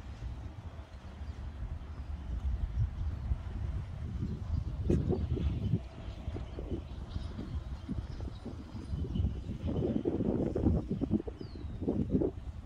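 Wind rumbling on a handheld phone's microphone during a jog, with the runner's footsteps and breathing; louder bursts come about five seconds in and again about ten seconds in.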